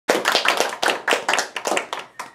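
A small group of people clapping by hand in brisk applause, the claps dense and overlapping, dying away at the end.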